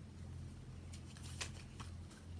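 Small paper booklet being handled, its pages giving a short cluster of faint, crisp rustles about halfway through.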